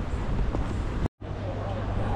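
Background ambience with faint voices, broken about a second in by a split-second dropout to total silence where the recording is stopped and restarted. After it, a steady low hum with a murmur of voices.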